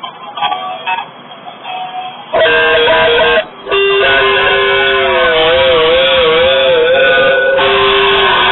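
Electric guitar opening a punk song in a very rough, lo-fi recording: a few quieter notes, then loud playing kicks in about two seconds in. After a brief break it carries on with held notes that waver up and down in pitch.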